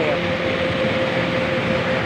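Steady outdoor street noise: a constant rush of traffic with a faint, even hum running through it.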